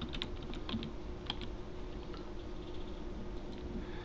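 Typing on a computer keyboard: a handful of separate keystrokes, most of them in the first second and a half, entering a short word into a text field.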